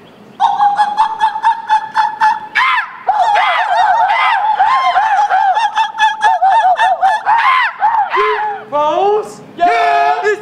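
Young men giving a high-pitched fraternity call through cupped hands: a long held note, then a fast warbling run of rising-and-falling yelps, ending in a few downward-sliding calls.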